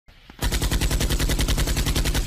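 Machine-gun fire sound effect: a loud burst of rapid, evenly spaced automatic shots starting just under half a second in and continuing without a break.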